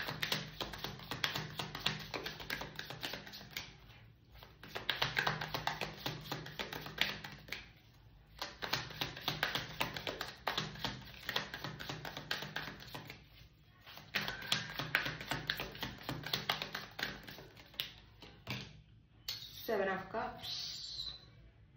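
A deck of tarot cards shuffled by hand: a rapid patter of card edges clicking against each other, in four bursts of about four seconds each with short pauses between.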